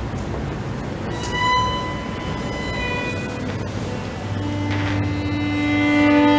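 Solo violin bowing long sustained notes. A high note is held from about a second in, then a strong low note enters near the four-second mark, with higher notes layered over it and the sound growing louder toward the end.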